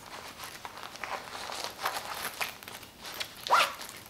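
Nylon zipper on a fabric travel neck pouch being worked, with soft fabric rustling as a passport is pushed into the side pocket. There is one short louder rasp about three and a half seconds in.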